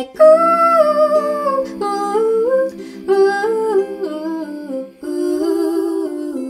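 Layered female voices singing a wordless "ooo" in close harmony, in slow, held phrases of a second or two each with a short break about five seconds in.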